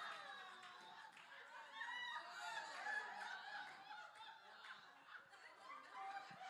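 Faint scattered laughter and chuckling from an audience, rising a little about two seconds in and then dying away.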